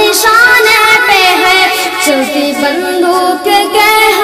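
A boy singing a naat, an Urdu devotional song in praise of the Prophet, in an ornamented style with wavering, bending notes.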